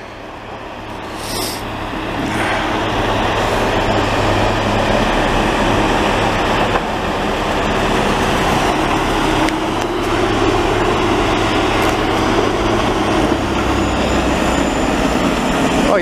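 Diesel engines of a snowblower and a dump truck working together, the blower loading snow into the truck. The sound grows over the first few seconds as they approach, then holds steady.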